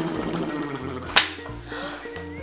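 A man's rough, rattling mouth noise lasting about a second, over light background music, then a single sharp hit just after a second in.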